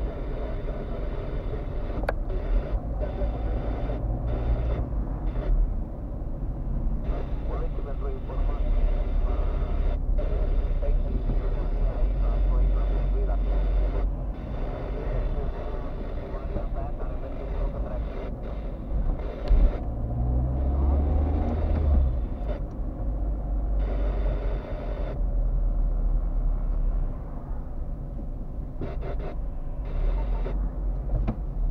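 Car driving heard from inside its cabin: a steady low engine and road rumble with tyre noise, swelling and easing every few seconds as the car moves with the traffic.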